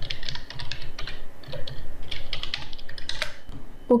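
Typing on a computer keyboard: a quick, irregular run of key clicks that stops shortly before the end.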